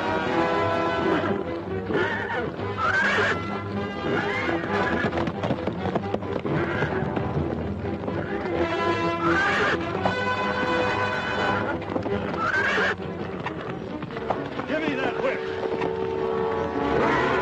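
A horse whinnying again and again over background music.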